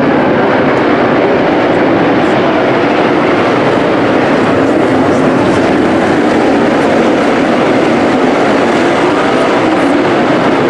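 A pack of dirt modified race cars' engines running hard together, a loud, continuous, unbroken roar heard from the grandstand inside an enclosed arena.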